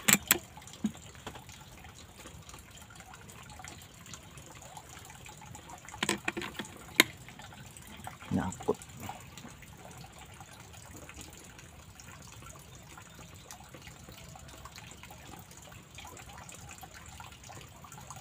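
Several separate sharp clicks, seconds apart, from working an air rifle's bolt over a low steady background hiss. Moments later the shooter says it has got stuck again.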